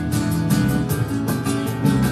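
Live instrumental music from a small band: nylon-string acoustic guitar, upright double bass and a drum kit, with regular drum and cymbal hits over the strummed guitar and bass notes.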